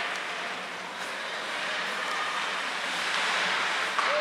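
Ice hockey rink noise during play: a steady hiss of skates scraping and carving the ice, growing a little louder near the end.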